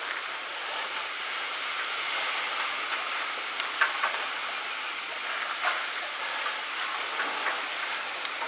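Chairlift machinery running at the bottom station while a chair is boarded and carries away: a steady hiss with a few short clicks and clanks scattered through the middle.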